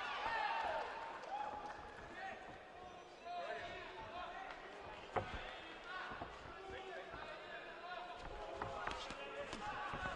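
Voices shouting in a boxing arena during a bout, with thuds of gloved punches landing. The sharpest thud comes about five seconds in.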